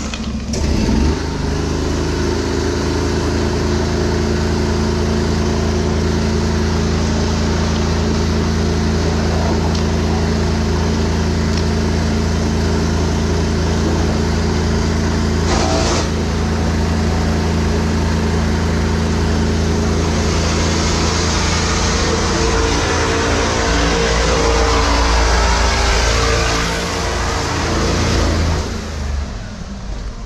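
High-pressure drain jetter running under load, a steady engine drone with the hiss of water jetting. About 20 seconds in the hiss grows louder and the drone's pitch shifts, then it eases off shortly before the end.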